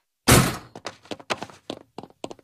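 A door is shoved open with a loud thunk about a quarter second in, followed by a string of short, light knocks.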